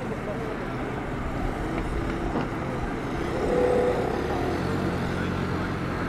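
Street traffic and the steady low hum of a heavy engine at roadworks, likely the wheeled excavator or truck, growing louder in the second half. Passers-by talk nearby.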